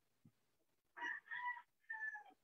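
Faint animal call in the background: a short run of pitched notes starting about a second in, the last one falling in pitch.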